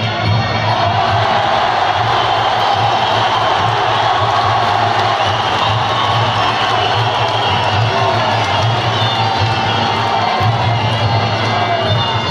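Spectators cheering and shouting continuously in an arena, over loud music with a heavy, steady bass.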